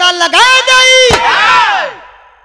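Several male voices in a loud, long held cry: the pitch rises in, holds for about a second, then slides down and fades away near the end. This is the birha singer and his accompanying singers breaking into a group vocal exclamation between narrated lines.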